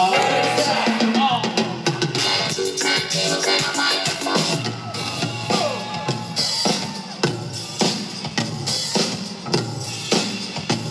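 Live rock band playing an instrumental passage with a prominent drum kit beat, heard loud from the audience.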